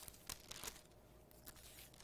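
Faint rustle of thin Bible pages being handled and turned, a few soft crinkles in an otherwise near-silent room.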